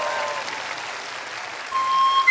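Studio audience and judges applauding. Near the end a held flute note starts the backing music's intro.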